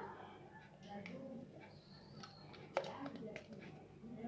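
Quiet room with faint background voices and a single sharp click just under three seconds in.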